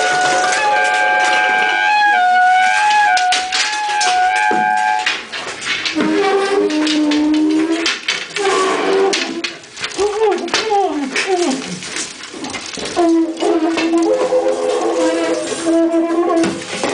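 Improvised horn and brass playing, a trumpet among them: long overlapping notes stepping in pitch for about five seconds, then lower held notes, swooping glides and a long steady low note near the end. Scattered clatter and knocks run through it.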